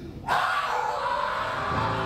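A man's loud, drawn-out stage yell that starts suddenly about a third of a second in, with the pit music coming in on low held notes near the end.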